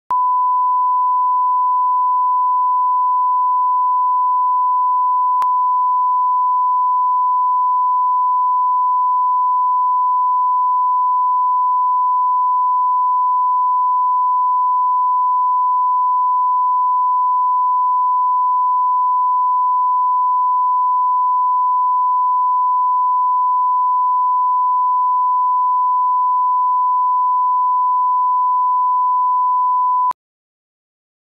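Steady 1 kHz reference test tone (line-up tone) played with colour bars: a single continuous sine beep held at one pitch.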